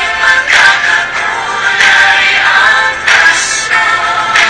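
A Christmas pop song plays with sung vocals over the backing music. A bright percussive beat strikes about every second and a quarter.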